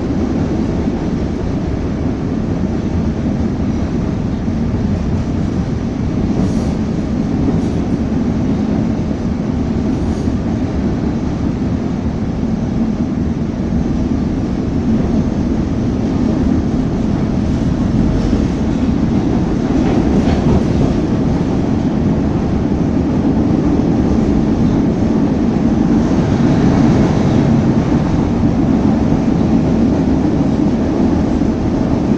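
CTA Blue Line rapid-transit train heard from inside the car while running at speed: a steady rumble of wheels on rail, growing a little louder in the last third.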